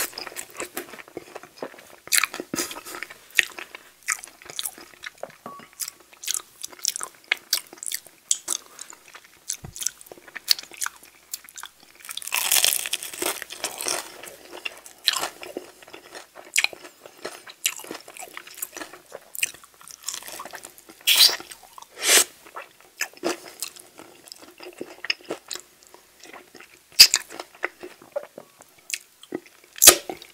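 Close-miked eating of sauced, crispy fried chicken wings: a steady run of short crunches, bites and wet chewing clicks. A longer crunchy stretch comes about halfway through, and a few sharp, louder crunches come near the end.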